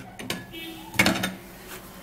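A glass bowl of raw peanuts handled and set down on a plastic cutting board. There are a couple of light knocks, then one sharp clink about a second in.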